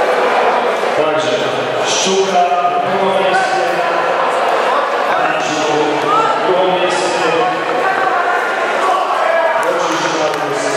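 Several voices shouting over one another in an echoing sports hall: corner coaches and spectators calling during a kickboxing bout. A few sharp thuds of blows landing stand out above them, about two seconds in and again around five to seven seconds.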